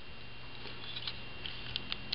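A few faint, light clicks from the plastic parts of a transforming toy figure being handled, over a steady low hum.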